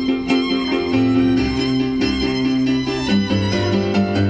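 Live violin melody over a keyboard accompaniment with held low bass notes, played through large outdoor PA speakers.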